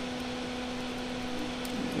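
A small fan running: a steady hum with a low tone and its overtone over a faint hiss, the low tone fading out near the end.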